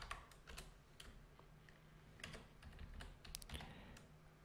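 Faint typing on a computer keyboard: a few scattered keystrokes, then a quicker run of them in the second half.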